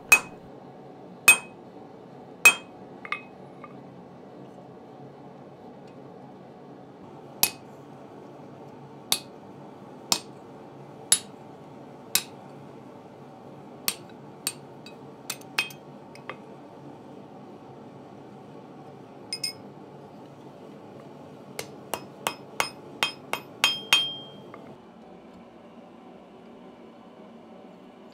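Hammer striking a hand punch to drive a hole through the flat spade finial of a forged steel hook on the anvil: sharp, ringing metal-on-metal blows, spaced about a second apart at first, then a quicker run of about eight blows near the end. A steady low hum runs underneath.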